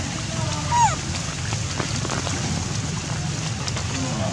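A baby macaque gives one short, high, falling squeak about a second in, over a steady low background rumble.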